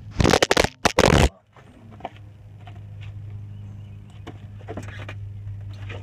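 A 1998 Jeep Grand Cherokee engine running with a steady low hum, heard from underneath the vehicle. Near the start there is about a second of loud scraping handling noise, then scattered light clicks. The owner suspects an exhaust leak at a cracked header weld.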